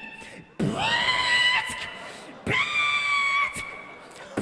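Beatboxer's vocal sounds through a handheld microphone: two long, high-pitched held tones of about a second each, with short mouth clicks before and between them.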